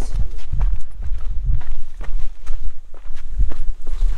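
Uneven footsteps of people in sandals going down a loose dirt and gravel hill path, with a steady low rumble underneath.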